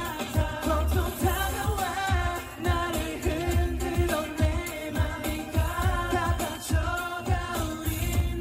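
Korean pop song performed live through a concert sound system: male vocals over a heavy, pulsing bass beat.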